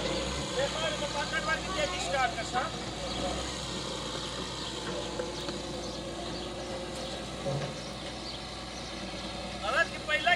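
Diesel engines of a wheeled excavator and a farm tractor running at a steady idle.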